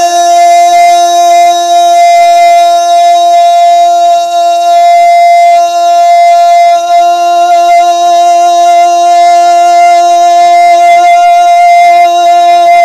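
A single long, loud note held at one steady pitch with its overtones, a sustained drone in a naat recording.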